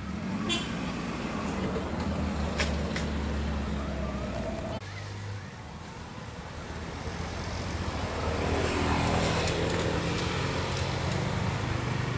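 A motor engine running steadily under a murmur of voices, with a sudden change in the sound about five seconds in.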